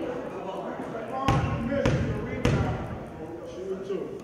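Basketball bounced three times on a hardwood gym floor, about half a second apart, in a free-throw dribble routine. Voices chatter in the background.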